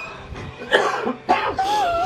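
A woman crying: two short, sharp cough-like sobs about half a second apart, then a wavering, wailing cry near the end.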